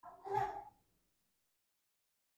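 A short breathy vocal sound from a woman, under a second long, at the very start, then silence.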